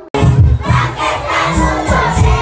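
Loud, bass-heavy music from a large PA speaker suddenly blasts on just after the start, with a crowd of children shouting over it.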